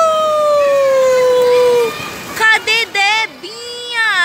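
A child's long, high-pitched playful scream, held for about three seconds and slowly falling in pitch. It is followed by a run of short squeals near the end.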